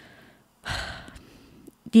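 A woman's sigh: a breathy exhale into a close microphone about two-thirds of a second in, fading over half a second.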